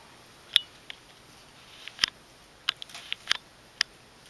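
A handful of short, sharp clicks and ticks, about eight in four seconds and irregularly spaced, over quiet room tone.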